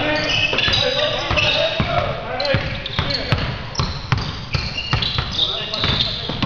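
Pickup basketball on a hardwood gym floor: a basketball bouncing and sneakers squeaking in short high chirps as players run and cut, with players' voices mixed in.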